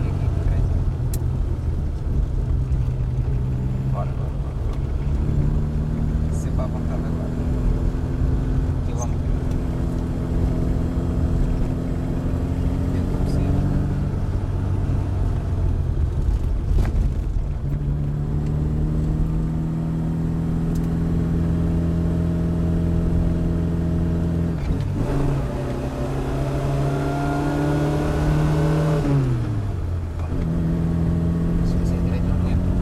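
Opel Kadett C 1204's four-cylinder engine heard from inside the cabin, pulling under load with its pitch climbing slowly. It falls back and then climbs again through the middle, dips briefly, rises steeply to high revs and drops sharply near the end.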